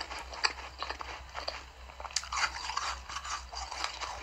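ASMR eating sounds: a person chewing a bitten-off piece of a crunchy treat, with scattered crisp crackles and a denser run of crunching a little past halfway.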